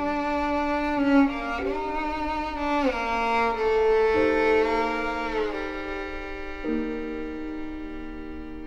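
Slow, sombre film-score music for bowed strings: long held chords whose notes slide from one pitch to the next a few times, growing a little softer toward the end.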